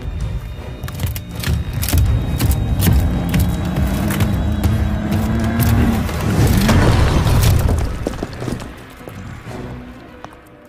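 Tense film score with heavy booms and many sharp impacts over a deep rumble, and a held tone slowly rising in the middle; it grows quieter near the end.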